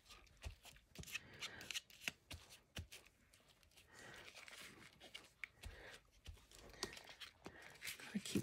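Faint rustling and soft scattered taps of paper and lace being handled and slid around on a craft cutting mat.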